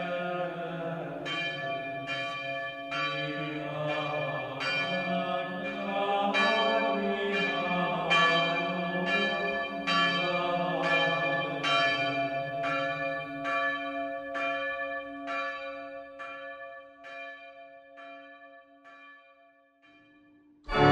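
Church bells ringing, a strike a little under once a second with each ringing on into the next. The ringing fades away over the last few seconds.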